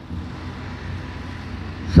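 A pause in amplified speech: a steady low hum and background noise, with no words, until the voice returns at the very end.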